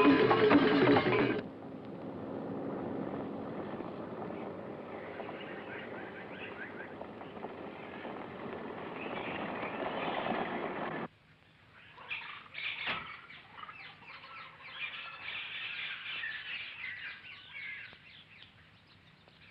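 Music breaks off about a second and a half in, giving way to a steady outdoor background with bird calls. About eleven seconds in, the background drops suddenly to a quieter one with scattered short chirps and knocks.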